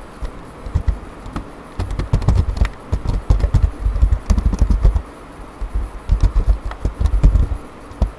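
Typing on a computer keyboard: a few scattered keystrokes, then quick runs of them from about two seconds in. Each keystroke is a click with a dull thud beneath it.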